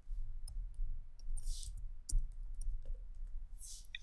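Sparse, sharp clicks of a computer keyboard and mouse as a new row is typed into a table, over a steady low electrical hum. There are two short soft hisses, one in the middle and one near the end.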